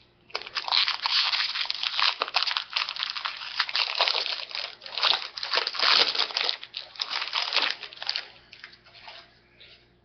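Foil wrapper of a Topps trading-card pack being torn open and crinkled by hand, a dense, uneven rustle that dies down about eight seconds in.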